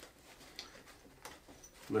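Faint rustling and a few soft scrapes from a ballistic nylon bag being handled as its removable pouch panel is pulled up out of it.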